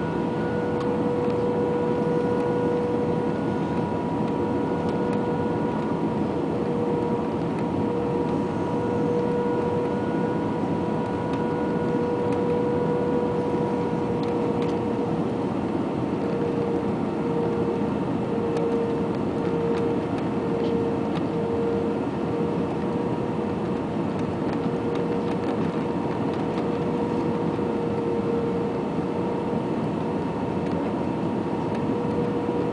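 Airbus A320 cabin noise on final approach with flaps extended: a steady rush of engine and airflow noise under a constant droning hum, the hum wavering briefly a little past the middle.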